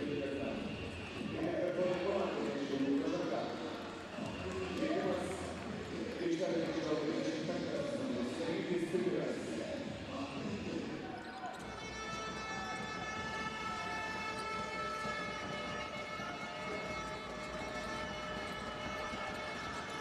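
Basketball arena during a stoppage: crowd voices and a basketball bouncing on the hardwood court, echoing in the hall. About halfway through, a long steady pitched tone with overtones starts and holds to the end.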